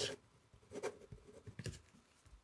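Pen writing on a sheet of paper, close-miked: faint, scattered scratching strokes and small clicks of the tip as a word is finished. A short hiss comes right at the very start.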